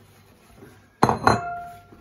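A plate set down on a kitchen worktop: a sharp clink about halfway through, a second knock just after, and a short ring that dies away.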